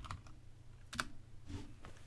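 A few keystrokes on a computer keyboard, sparse and light, with one sharper key press about a second in.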